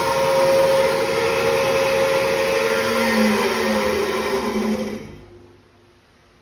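D-MA stainless-steel bandsaw running unloaded, its motor and blade giving a steady whir with a steady hum. About five seconds in it runs down and stops within a second.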